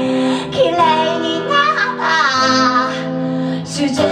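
A woman singing lead with a live band: a sung melody with vibrato and sliding notes over held chords from acoustic guitar, bass and keyboard.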